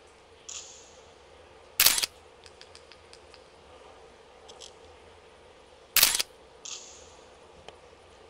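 A camera shutter fires twice, about four seconds apart, each a sharp clack lasting about a quarter second. Fainter brief hisses come shortly before the first and shortly after the second, with a few light ticks in between.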